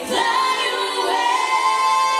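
Female pop vocals singing live over backing music, holding one long note that starts just after a brief dip at the beginning.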